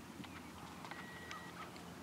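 Horse trotting on grass, its hoofbeats coming as faint soft thuds and clicks over a low outdoor background hum. A brief steady high tone sounds about halfway through.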